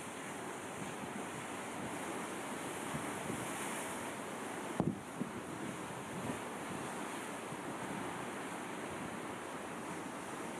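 Steady rushing wind and sea surf, with wind buffeting the microphone. A single brief knock about five seconds in.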